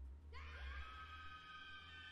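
A faint, high-pitched scream from an anime character's voice, rising at the start about a third of a second in and then held on one pitch.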